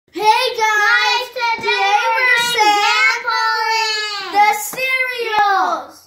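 A child singing a tune in a high voice, holding long notes with short breaks, and a single sharp click near the end.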